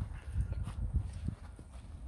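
Several light knocks and rustles from handling a portable volleyball net and its pole, over a steady low rumble.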